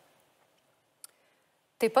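Near silence with a single short, sharp click about a second in. A woman's speech resumes near the end.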